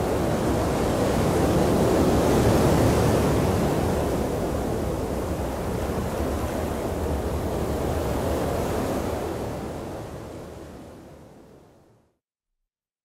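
Rough open sea and wind: a steady rush of breaking waves and wind that fades out over the last two seconds.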